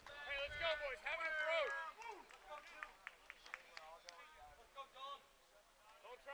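Faint voices of people talking and calling out, with a few small clicks in the middle.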